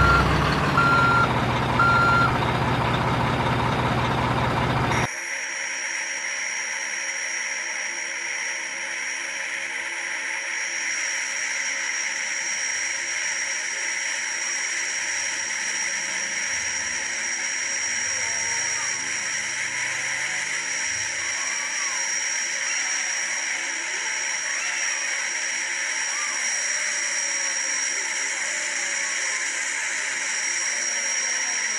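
Dump truck sound effects: a reversing alarm beeps over a running engine, the beeps stopping about two seconds in and the engine cutting off abruptly at about five seconds. Then comes a long steady hiss with a thin high whine, as the hydraulic tipper raises and lowers the bed.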